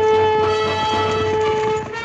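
Orchestral TV score: a loud brass chord is held for nearly two seconds and breaks off near the end, over the rest of the orchestra.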